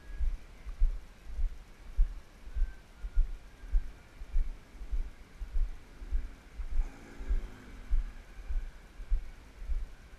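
Footsteps of a person walking, heard as dull low thuds through a body-worn GoPro, evenly paced at a little under two a second.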